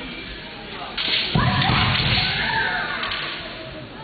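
Kendo fencers' loud kiai shouts in a large, echoing hall, breaking out suddenly about a second in with the sharp crack of a bamboo shinai strike, then trailing off.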